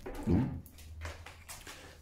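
A brief wordless hum of a man's voice, then a few faint clicks and rustles from a handheld camera being moved.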